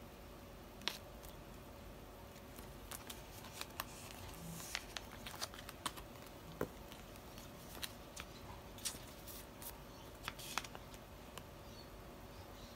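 Faint handling of plastic photocard sleeves and binder pocket pages: scattered small clicks, ticks and crinkles as cards are slid in and out, over quiet room tone.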